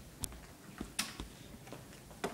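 Control knobs of a stainless-steel wall oven being turned, giving about five sharp, irregular clicks.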